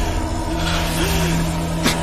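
Dramatic soundtrack: a steady low droning tone with several held notes above it, and a single sharp crack just before the end.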